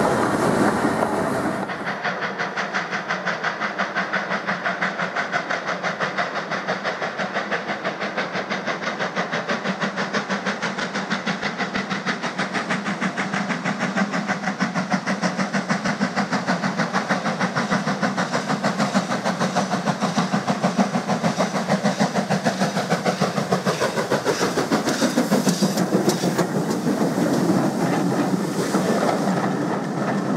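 Steam locomotive hauling a passenger train, its exhaust beating regularly as it works towards and past the listener, with a falling tone as it goes by. Near the end the coaches run past with a clickety-clack of wheels on the rail joints.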